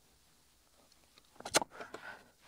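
Near-quiet room tone, broken about one and a half seconds in by a single short, sharp click, followed by a couple of faint short sounds.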